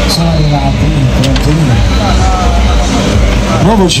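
A steady low engine rumble, with people's voices over it that rise and fall in pitch.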